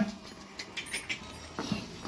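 A short animal call right at the start, followed by faint scattered clicks and rustling.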